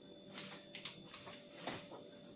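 Faint handling noises: a few soft rustles and taps of packaging being reached for and picked up, over a faint steady hum.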